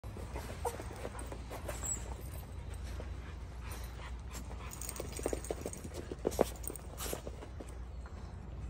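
Dogs at play giving a few short whines and yips, most of them in the second half, the loudest a sharp one about six and a half seconds in, over a steady low hum.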